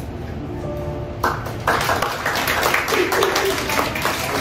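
Acoustic guitar and ukuleles letting the last notes of a song ring out softly, then applause breaking out suddenly about a second in and carrying on.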